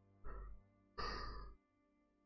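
A man breathing close to the microphone: a short breath, then a longer sigh about a second in.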